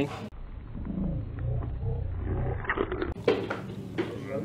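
A deep, muffled roar-like growl, edited in abruptly over the footage. It cuts off suddenly about three seconds in and is followed by a short sharp burst.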